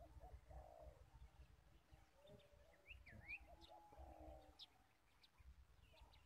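A dove cooing faintly in short low phrases, one near the start and a longer run from about two to four and a half seconds in, with small birds chirping high-pitched in between. A low rumble of wind or handling noise sits underneath.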